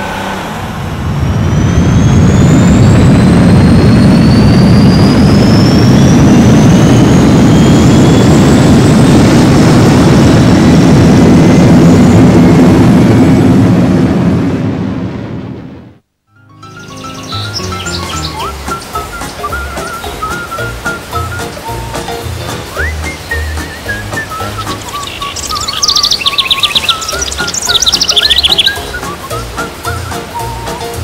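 Loud aircraft take-off sound effect: a rushing noise with a slowly rising whine that fades out about halfway through. After a moment's silence, background music starts, with bird-like tweets near the end.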